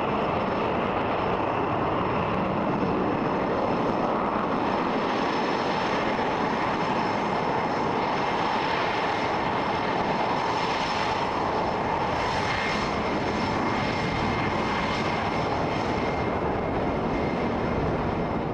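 EA-18G Growler's twin turbofan jet engines running at low taxi power: a steady rush of jet noise with a thin, high, constant whine over it.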